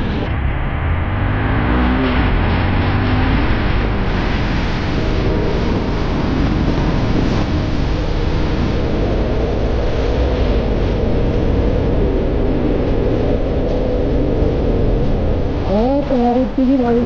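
Vehicle driving noise: a steady low rumble of engine and tyres on a wet road, under a continuous rush of wind on the microphone.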